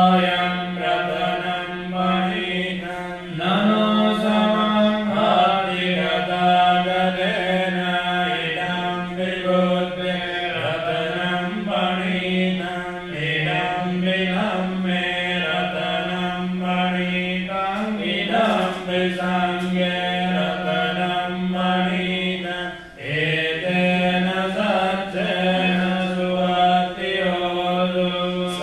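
Buddhist paritta chanting: a steady recitation held on a nearly constant pitch. It has short breaks for breath about 3 seconds in and again near 23 seconds.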